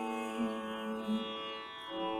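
Carnatic-style devotional singing: a woman's voice holds a note and lets it fade over a steady drone, and the drone carries on alone near the end.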